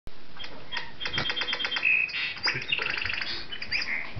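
Audubon singing bird clock playing its hourly recorded bird song: a quick run of repeated chirps, a short whistled note about two seconds in, then more rapid chirps and trills.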